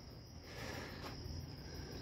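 Faint, steady high-pitched chirring of crickets in the background; otherwise quiet.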